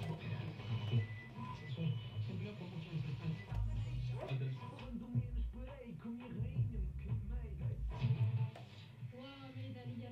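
A medium-wave broadcast, music with a voice, playing from a Philips F6X95A valve radio: the radio section works, its ferrite antenna coil connected through a temporary clip lead.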